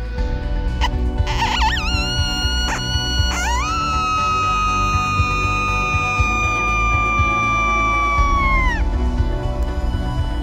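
Coyote howl sounded on a predator call: a short wavering lead-in, then one long high note that slides up, holds with a slight sag for about five seconds and falls off near the end.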